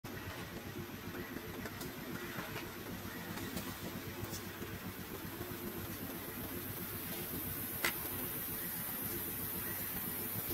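A steady low engine hum, like a motor vehicle idling, with a single sharp click about eight seconds in.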